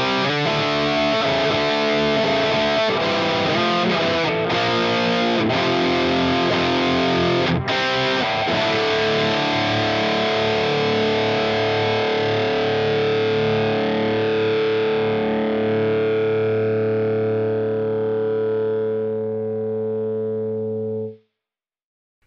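Ibanez JPM100 P1 electric guitar with heavy distortion playing a fast rhythmic metal riff with short stops. About eight seconds in, a final chord is left to ring and slowly fade, then cuts off suddenly near the end.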